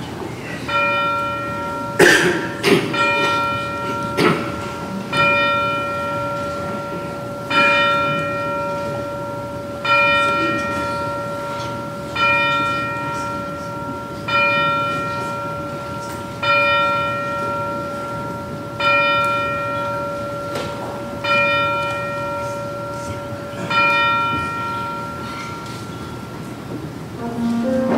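A single church bell tolling at a slow, steady pace, about one stroke every two and a half seconds, the same note each time and each stroke ringing on into the next. A couple of sharp knocks sound about two and four seconds in.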